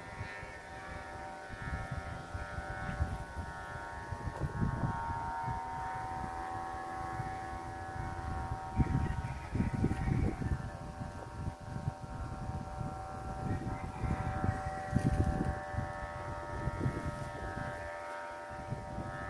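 Steady whistling drone of several notes sounding together at once, from bamboo flutes on kites flying high. Gusts of wind buffet the microphone several times, loudest about 9 to 11 seconds in.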